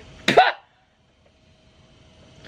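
A person's single short voiced cry, a brief yelp with a quick bend in pitch, about a quarter second in.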